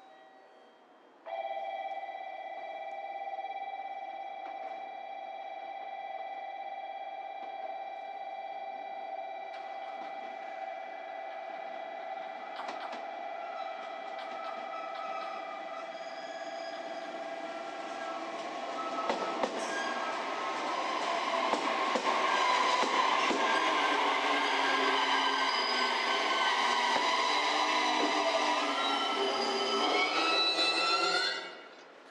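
JR Kyushu 815 series electric train approaching and pulling in alongside the platform, its running noise growing much louder about two-thirds of the way in, with a short rising whine near the end. Before it, steady high-pitched tones start a second or so in and carry on through the first half.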